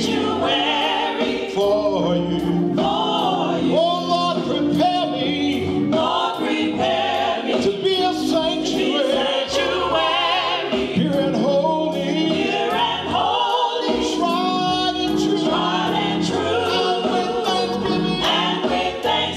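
Gospel vocal group singing together into microphones, over instrumental accompaniment with a steady beat.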